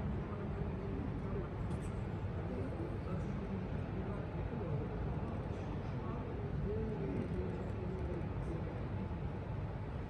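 Airport terminal background noise: a steady low hum of the hall with distant, indistinct voices.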